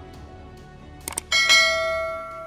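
Two quick clicks, then a bright notification-bell chime that rings out and slowly fades, over soft background music. The chime is the loudest sound.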